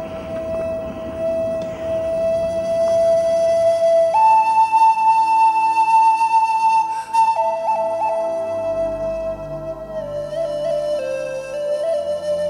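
Background film music led by a flute playing long held notes: one note for about four seconds, a step up to a higher note held for about three seconds, then back down and sinking slowly near the end.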